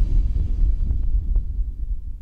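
Deep pulsing bass rumble from a cinematic video intro soundtrack. It fades out toward the end, with a few faint ticks about a second in.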